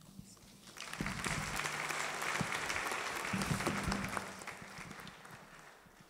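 Audience applauding. It starts about a second in, holds for a few seconds, then dies away near the end.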